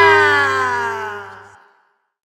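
Final held chord of an Andean santiago band, its pitch sliding slowly downward as it fades out. A steady low bass note under it stops about a second and a half in.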